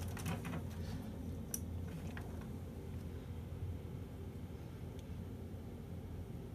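A few faint clicks over a low steady hum as a Lava Lite lava lamp is switched on.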